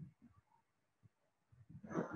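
Near silence of a video call with a few faint low bumps in the first moment, then a woman's voice beginning right at the end.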